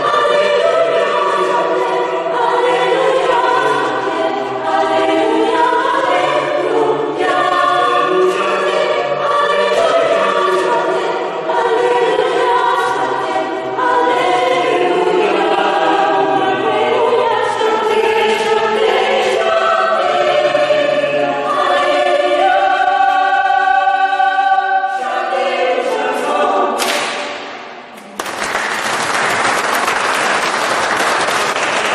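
Small polyphonic choir singing unaccompanied, closing on a long held chord that dies away in the church's reverberation. Audience applause breaks out about two seconds before the end.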